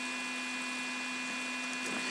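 Steady low electrical hum with hiss under it: room tone, with no distinct events.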